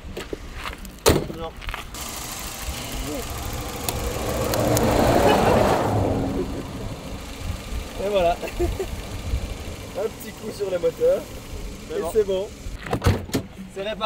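A vehicle passing on the road, a rushing sound that swells to its loudest about five seconds in and then fades away. A sharp knock comes about a second in.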